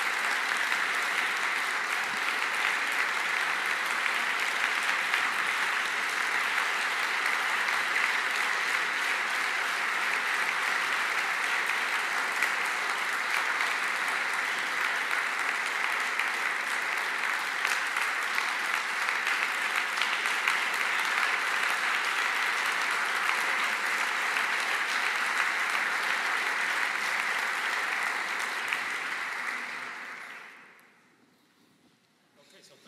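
Sustained applause from a large seated audience in a hall, dense and steady, dying away near the end.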